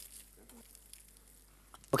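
Faint sizzle and crackle of whole spices, dried chillies and herbs dry-roasting in a hot pan, before any oil goes in.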